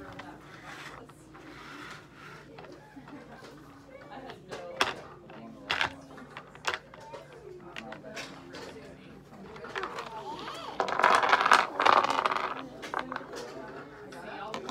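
Small counting cubes clicking down onto a tabletop one at a time: a few sharp clicks, then a louder stretch of clattering near the end as the cubes are handled.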